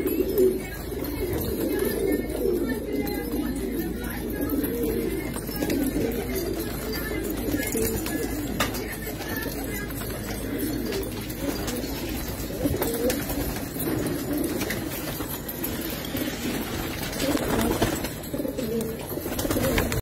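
A flock of domestic pigeons cooing, many low coos overlapping without a break.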